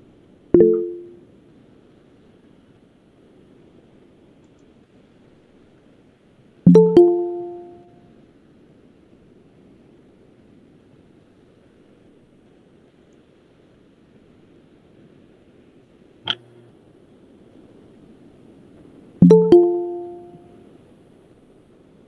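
Google Meet notification chime sounding three times, each a short electronic two-note chime that fades away in about a second, as people ask to join the call. A single brief click comes between the second and third chimes.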